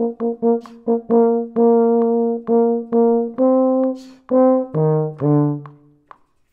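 A single euphonium playing a melodic line of short, separately tongued notes mixed with longer held ones. Near the end it drops to a low held note that fades away.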